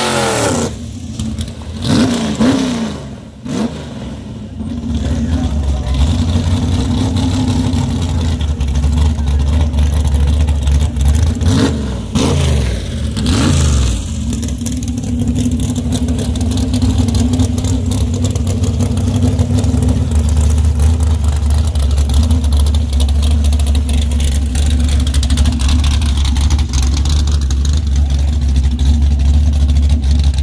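Dragster engine at the start line, blipped up and down a couple of times in the first few seconds, then running at a loud, steady idle. There is another pair of revs about twelve seconds in.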